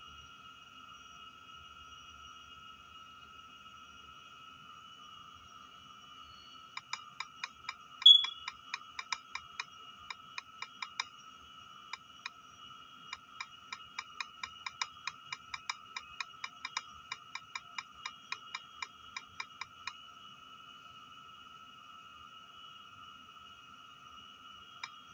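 On-screen keyboard key-press clicks on an Android tablet as a message is typed: a run of quick taps starting about seven seconds in and stopping near twenty seconds, with one much louder tap near eight seconds and a short pause near twelve. A steady high-pitched whine of two tones runs underneath throughout.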